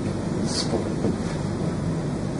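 Steady low rumble like wind noise on the microphone, with a few faint fragments of a man's voice.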